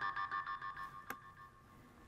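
Modular synthesizer sounding a fast repeating pulsed tone pattern, about seven pulses a second, which fades out over the first second and a half. A single sharp click sounds about a second in.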